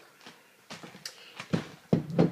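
Small clicks and taps of a jar being handled, then two dull knocks near the end as it is set down.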